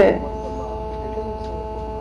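Steady electrical mains hum with a few faint, level tones over it, picked up through the microphone and sound system. A woman's voice trails off at the very start.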